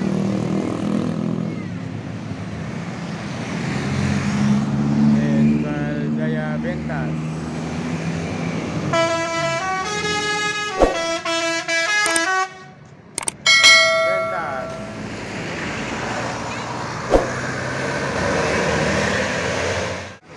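Intercity coach's multi-tone horn playing a quick run of stepped notes about nine seconds in, stopping briefly and sounding again a second or so later, over the low running of the bus's engine as it draws near.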